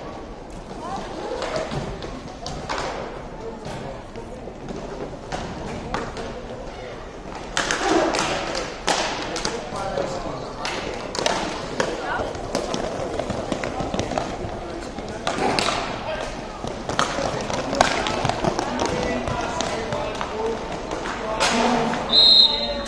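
Hockey game sounds: repeated sharp clacks and knocks of sticks striking the puck, each other and the rink boards, heard among shouting voices of players and spectators.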